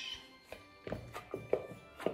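Soft background music under about five dull thunks in the second half, as a nut-and-biscuit dough is pressed and kneaded by hand in a bowl on a tabletop.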